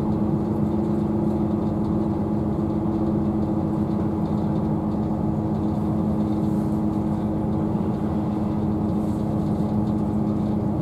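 Steady running noise heard inside the carriage of a GWR Class 158 diesel multiple unit at speed: the drone of the diesel engine with a steady low hum, over continuous wheel and track noise.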